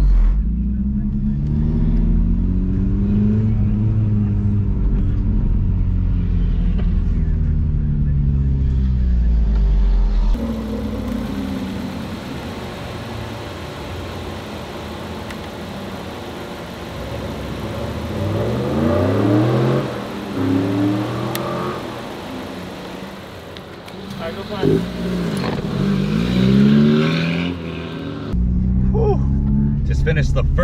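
Turbocharged Honda Civic Si four-cylinder heard from inside the cabin on track, revving up and down through the gears for about ten seconds. After a cut the sound is quieter and hissier, with a few short bursts of an engine accelerating and rising in pitch. The loud engine drone returns near the end.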